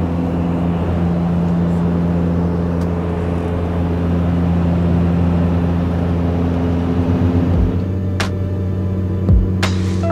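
Steady cabin drone of a Beechcraft Super King Air 200 in cruise: its twin PT6A turboprops and propellers give several constant low hums under a broad rush of air. About eight seconds in the drone drops back, a few sharp clicks sound and music comes in.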